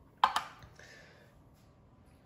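Glass tumbler set down on the platform of a digital kitchen scale: two sharp knocks close together about a quarter of a second in.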